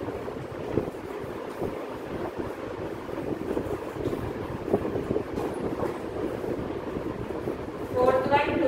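Chalk tapping and scraping on a blackboard as words are written, with a few sharper taps, over a steady low background noise.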